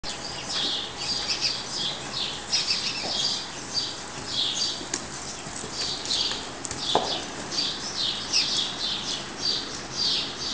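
Small birds chirping over and over, several short high chirps a second overlapping one another.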